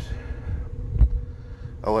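A low rumble and a faint steady hum, with a single dull thump about a second in: handling noise on a handheld camera's microphone.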